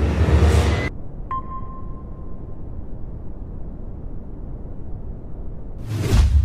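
Logo-intro sound effects: a whoosh, then a click and a ping held on one note for about a second, over a steady low rumble; a second whoosh swells near the end.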